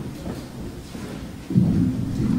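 Low rumbling handling noise from a handheld microphone being picked up, jumping suddenly louder about one and a half seconds in.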